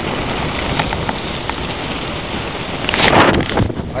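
Wind buffeting the camera's microphone: a steady rushing noise that swells into a stronger gust about three seconds in.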